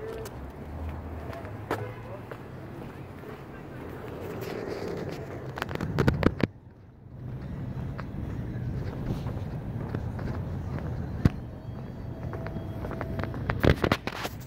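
Outdoor parking-lot ambience from a handheld phone on the move: a steady low traffic and wind rumble, with a few sharp knocks of handling noise, a cluster of them about six seconds in followed by a brief drop to near quiet.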